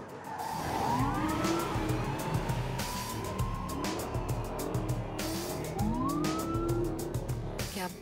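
Police siren sounding in short rising whoops over the low rumble of car engines.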